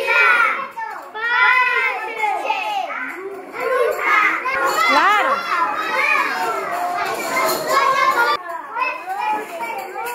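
Several young children talking at once, their high voices overlapping in a continuous busy chatter.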